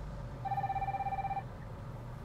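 Incoming-call ringtone played over the car's Bluetooth audio system: one steady electronic tone about a second long, starting about half a second in, over the low rumble of the car cabin on the move.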